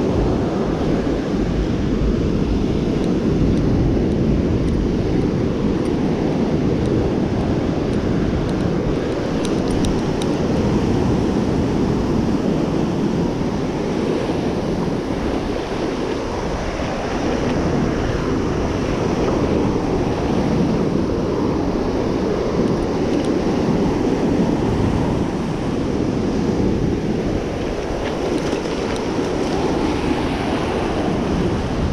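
Ocean surf breaking and washing up the beach, with a steady low rumble of wind buffeting the microphone.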